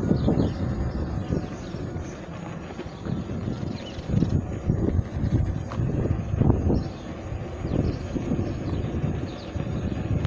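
Wind buffeting the microphone of a riding electric unicycle: a low, uneven rumble that swells and drops every second or so.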